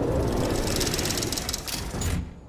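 Sound effect of a sports-broadcast ranking reveal: a loud mechanical rumble with a fast ticking rattle as the number counter rolls into place. It cuts off just after the end.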